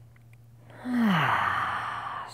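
A woman's sigh, a relaxed out-breath in a seated yoga stretch: about a second in it starts with a short voiced tone that falls in pitch, then goes on as a long breathy exhale.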